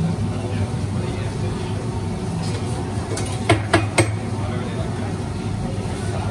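Steady low hum behind the espresso bar, with three sharp knocks in quick succession just past halfway, the loudest sounds here, as the barista handles gear at the espresso machine and grinder.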